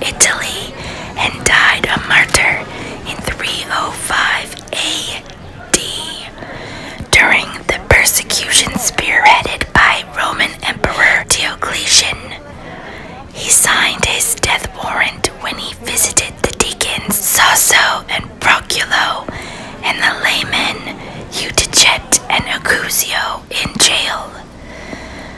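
A man's voice whispering continuous speech, with a few short pauses.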